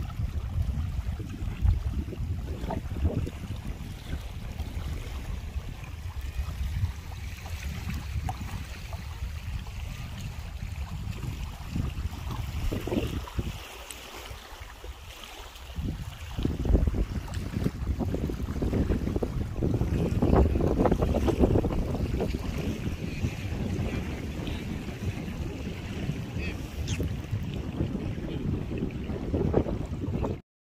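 Wind buffeting the microphone in gusts: an uneven low rumble that drops away for a couple of seconds near the middle and then comes back stronger.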